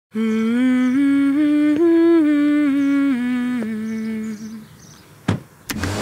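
A voice humming a slow tune in long held notes that step up and then back down, fading out about four and a half seconds in. Two short sharp knocks follow near the end.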